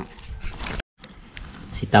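Faint, scattered clicks and small knocks of hands handling pieces of sliced banana stem in a plastic basin. An edit cuts them off into a moment of silence just under a second in, and faint handling noise follows until a voice starts near the end.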